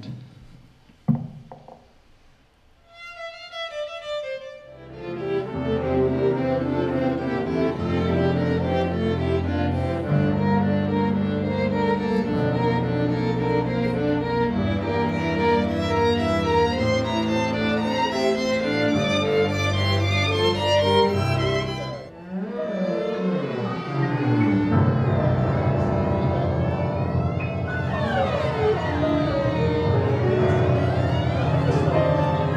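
Small string ensemble of violins, viola, cello and double bass playing contemporary classical music, the sound made from drawn falling-leaf lines turned into notes. A short rising run of notes opens it, then a dense passage over held low notes, and after a brief drop about three-quarters through, swooping glides up and down in pitch.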